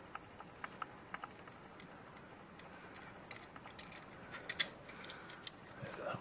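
Small clicks and ticks of fingers handling tiny standoffs, screws and nuts against a Raspberry Pi circuit board. Scattered light clicks at first, busier and louder from about three seconds in, the loudest couple of clicks about four and a half seconds in.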